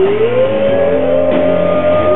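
Rock band playing live, electric guitar to the fore; one note slides up at the start and is held.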